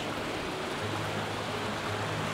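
Small mountain stream flowing: a steady rush of water.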